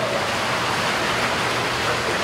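Steady rushing hiss of background noise, even and unbroken, with no distinct events.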